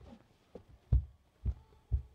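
Barefoot footsteps on a laminate floor close to a microphone at floor level: four heavy thuds about half a second apart, the one about a second in the loudest.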